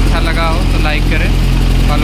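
Steady low drone of construction-site engine machinery running during concrete casting, with voices talking over it in the first second and again near the end.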